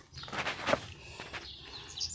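Faint scuffing and rustling on dry cut grass and bare soil, with birds chirping faintly in the background.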